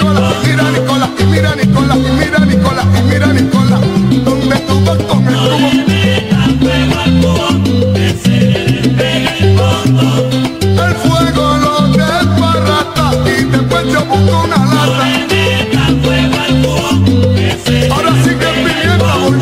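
Salsa band playing an instrumental passage without vocals: a steady bass line moving note by note under Latin percussion and higher melodic instruments.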